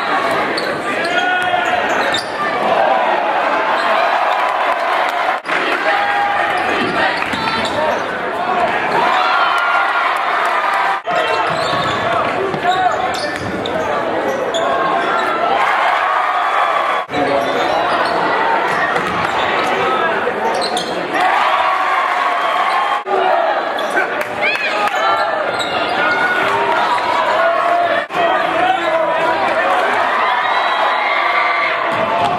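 Basketball game sound in a gymnasium: crowd voices and a ball bouncing on the hardwood, with sharp brief dips in the sound about every five to six seconds.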